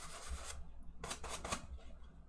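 A large paintbrush being rubbed and wiped on a paper towel to knock off excess oil paint: a scratchy rubbing that gives way, about half a second in, to a few short, sharp swipes.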